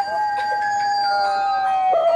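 A dog howling one long, slowly falling note, with music playing faintly behind it.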